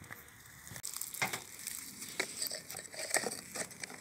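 Irregular light clicks and scrapes of a wooden block being pushed against a plastic hive entrance reducer to close off part of the hive entrance.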